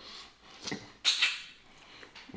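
Close-miked eating sounds: two short, wet mouth noises, the louder about a second in, as pork neckbones are chewed and sucked off the bone.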